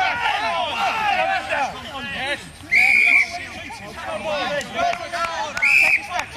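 A referee's whistle is blown twice, each a short, steady, shrill blast of about half a second, roughly three seconds apart. Players and spectators are shouting throughout.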